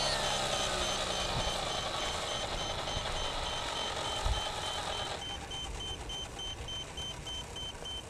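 Align T-Rex 550 electric RC helicopter winding down after landing: the motor whine has cut and the rotor slows, its pitch falling and fading over the first couple of seconds. A rapid high beeping repeats throughout, and the overall sound drops quieter about five seconds in.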